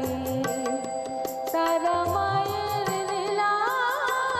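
Instrumental interlude of a Shyama Sangeet devotional song: harmonium notes held under a gliding melody line, with regular drum strokes and low bass-drum notes that swoop up in pitch, as on a tabla.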